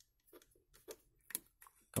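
A few faint, irregular clicks and ticks from a small screw being turned by hand with a precision screwdriver into a soft plastic bottle cap.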